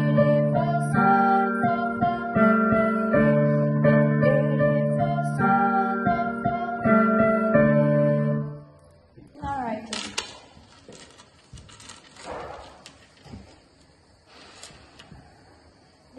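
Piano playing a slow sequence of D minor chords and arpeggios, a new chord about every second. The playing stops about halfway through, leaving quiet knocks and rustling.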